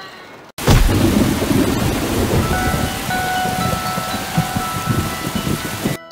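Thunder rumbling over steady heavy rain, cutting in suddenly about half a second in after a brief silence. Faint chime-like tones join about halfway through.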